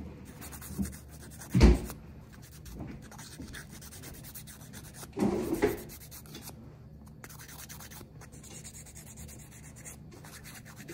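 Nail file rubbing back and forth across a fingernail in faint, quick scratching strokes, filing the natural nail down. A sharp thump comes about a second and a half in, and a longer knock or rustle about five seconds in.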